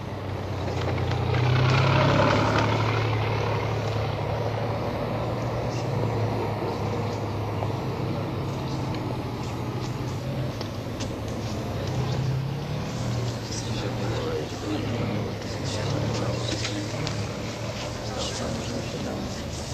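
A heavy vehicle engine running steadily with a low rumble under the indistinct murmur of a crowd's voices. It is loudest about two seconds in, and scattered light clicks come in the second half.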